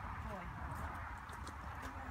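Horse's hooves stepping on a gravel arena surface at a walk, faint and irregular, over a steady low rumble.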